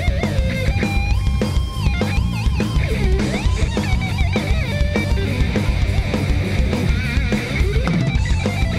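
Live heavy metal band playing, led by a distorted electric guitar solo of held, bending notes and pitch slides over pounding drums and bass.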